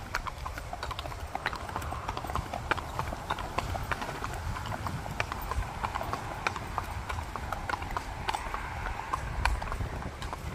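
Hooves of several horses walking on asphalt: an overlapping, irregular run of sharp clip-clops.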